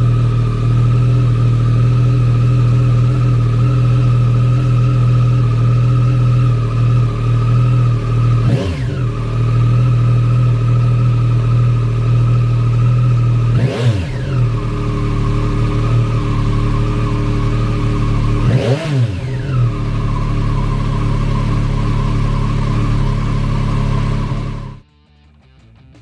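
Yamaha Tracer 9 GT+ motorcycle's inline three-cylinder engine idling steadily, with three quick throttle blips that rise and fall about 8, 14 and 19 seconds in. It is switched off about a second before the end.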